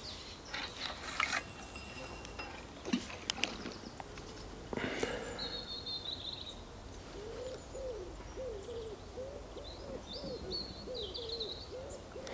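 A pigeon cooing, a run of short soft calls repeating through the second half, with a small bird chirping high above it twice. Earlier there are a few light clicks and knocks as fishing tackle is handled.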